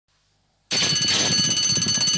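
Racecourse starting bell ringing loudly and continuously as the starting gate opens, beginning abruptly about two-thirds of a second in: the signal that the race has started.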